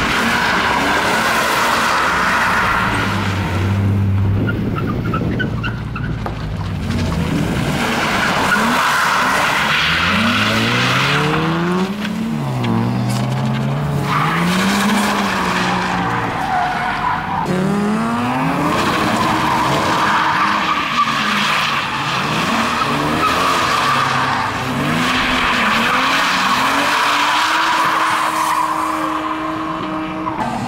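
BMW E36 328i's straight-six engine revving up and down as the car drifts in circles, with continuous tyre squeal from the rear wheels sliding on the tarmac. The engine pitch rises and falls again and again from about a third of the way in.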